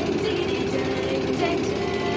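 Small boat engine running steadily with a rapid, even pulse.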